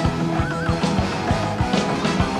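Live rock band playing an instrumental passage: a drum kit beating steadily under a horn section of saxophone, trumpet and trombone. A short wavering high note comes about half a second in.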